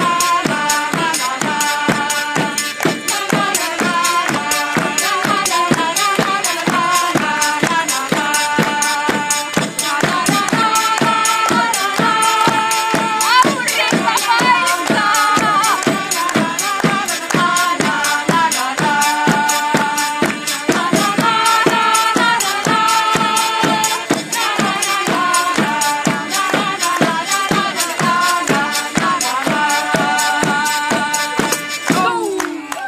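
Medieval-style folk band playing a song: a steady, quick beat on a side drum and tambourines under a melody from a wind pipe and hurdy-gurdy, with women singing.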